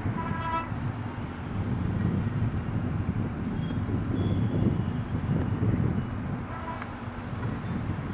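Steady low outdoor rumble that swells and fades, with a short horn-like tone at the very start and a few faint high whistle-like tones about midway.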